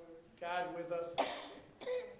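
A person speaking a few indistinct words, then coughing sharply about a second in, with a shorter cough or throat-clear near the end.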